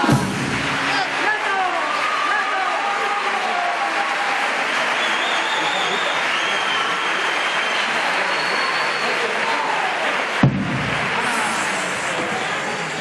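Theatre audience applauding and cheering with shouts, as a murga's sung piece ends on a sharp final hit. A single thump about ten and a half seconds in.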